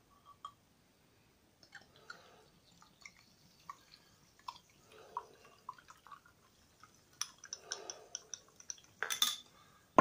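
A ramune soda bottle and a drinking glass being handled, with scattered small clinks and taps and soft liquid sounds as the fizzy yuzu soda is poured into the glass. Near the end there is one short, sharp burst, the loudest sound.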